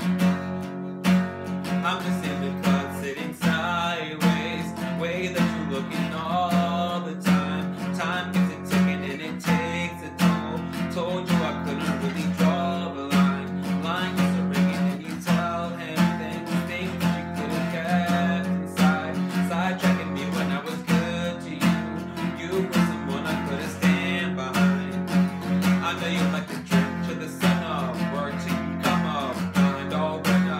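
Steel-string acoustic guitar strummed with a pick in a steady, repeating chord pattern. A man's voice sings over the guitar in places.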